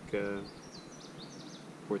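A small bird singing a short run of quick, high chirps during a pause in a man's speech.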